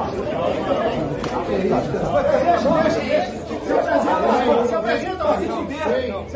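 Several men's voices shouting and talking over one another in a heated argument, overlapping into a confused chatter in a large meeting room.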